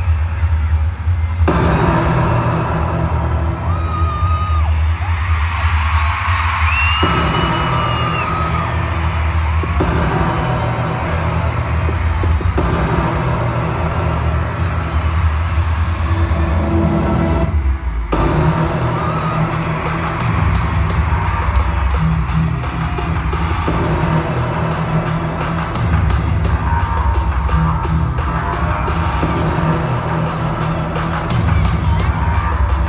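Loud live pop-concert music over an arena sound system with heavy bass, with the crowd cheering and whooping. Just past halfway it drops out briefly, then a fast ticking beat comes in.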